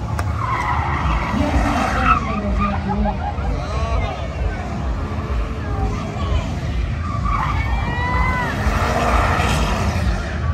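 Cars drifting and doing burnouts on asphalt: engines running hard at high revs over a steady rumble, with tires skidding and squealing. Short high squeals glide in pitch near the end.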